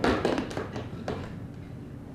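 A sharp tap and then a couple of fainter ones, from parts of a piano action being handled.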